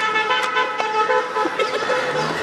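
A car horn sounding in long held blasts with brief breaks, over street noise, with a few sharp clicks.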